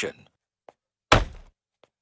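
A single hard thump about a second in, a cartoon sound effect of a blow, with a short tail that dies away quickly.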